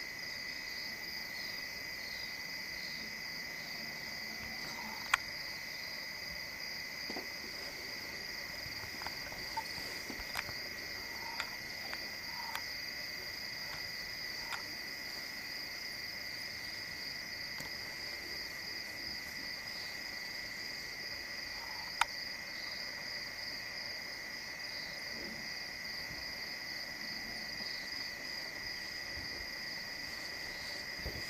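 Night chorus of crickets and other insects: two steady trills at different pitches, the higher one pulsing rapidly, with a few short faint calls and two sharp clicks, about five seconds in and again about two-thirds of the way through.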